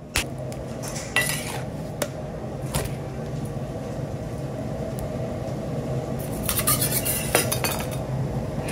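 Metal candy scrapers and tools clinking and scraping on a stainless-steel bench as a batch of hot candy is worked, with scattered knocks that turn into a quick run of clatter near the end. A steady low hum runs underneath.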